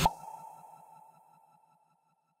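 End-screen transition sound effect: a sharp hit, then a ringing tone with quick repeating echoes that fade out over about a second and a half.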